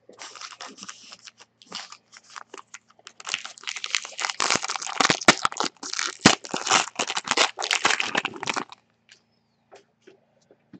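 Foil wrapper of a Clear Vision football trading-card pack crinkling and tearing as it is opened by hand: a dense run of crackles that stops about a second before the end.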